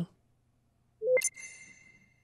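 FL Studio's start-up chime as the program finishes loading: about a second in, a brief low blip sweeps up into a single ringing high electronic tone that fades away.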